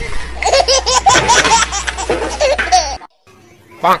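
A person laughing hard in a fast run of short, high-pitched laughs that cuts off abruptly about three seconds in, followed near the end by a brief cry.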